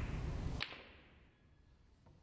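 A snooker cue tip striking the cue ball once, a single sharp click about half a second in, over a low steady hall hum that falls away abruptly right after; a faint click near the end.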